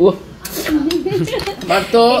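Metal fork clinking against a ceramic plate, with a sharp clink about half a second in.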